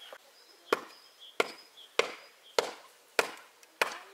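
A tool striking wood in a steady rhythm: six sharp blows about 0.6 seconds apart.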